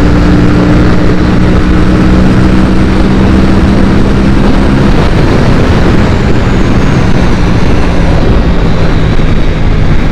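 Aprilia RS 457's parallel-twin engine running at high speed under heavy wind rush on the microphone. The steady engine note drops away about halfway through as the throttle is rolled off and the bike slows, leaving mostly wind noise.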